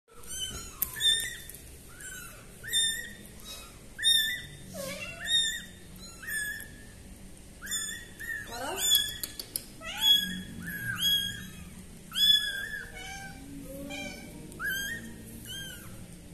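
Very young kittens mewing over and over: short, high-pitched calls about one a second, now and then two overlapping.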